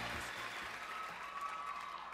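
Audience applause in a large hall, slowly dying down.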